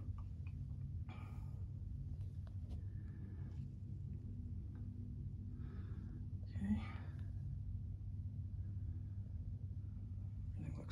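Soft breaths and whispery rustles every second or two from the person filming, over a faint steady low hum in a boat's engine compartment.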